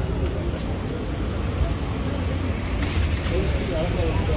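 Busy city street ambience: a steady low rumble of road traffic, with the chatter of passers-by, a little louder near the end.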